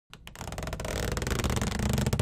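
Intro sound effect for an animation, swelling steadily in loudness after two quick clicks at the very start.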